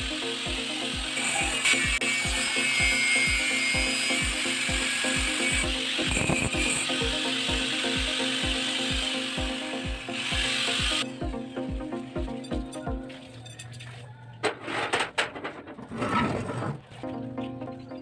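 Handheld angle grinder with a cut-off disc cutting through plain steel bar, a loud, high-pitched grinding that stops suddenly about eleven seconds in. A few sharp knocks follow near the end.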